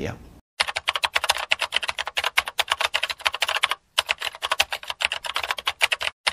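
Computer-keyboard typing sound effect: a fast, dense run of key clicks, with a brief pause about four seconds in, laid over caption text being typed out on screen.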